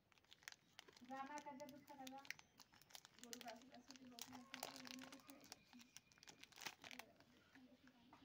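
Foil-lined plastic wrapper of a chocolate wafer bar crinkling and tearing as it is peeled open, with many quick crackles. A low voice sounds faintly underneath for most of it.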